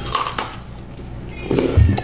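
Biting into a Lunchables cracker stack: a few crisp crunches, then chewing, with a short vocal sound near the end.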